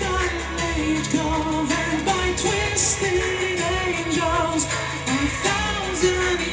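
Male lead vocalist singing a melodic line of held, bending notes live over a heavy metal band's backing, heard through the concert PA.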